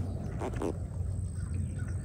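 Faint, short calls of marsh birds, common gallinules and American coots, over a low steady rumble.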